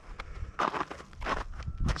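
Footsteps on a trail of gravel and patchy snow, three steps about two-thirds of a second apart.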